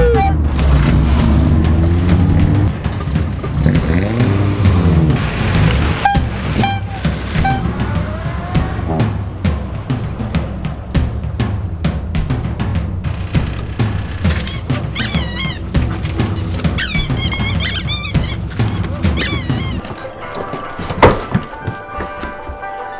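Background music with a dense low pulse, which drops away near the end, followed by a single sharp, loud hit.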